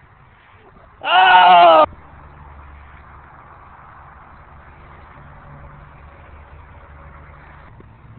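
A person's loud, high-pitched, drawn-out cheering shout about a second in, lasting just under a second. After it, only faint steady low background noise.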